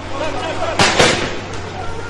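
Street-protest field sound: noisy outdoor ambience with distant voices, and two sharp bangs in quick succession about a second in.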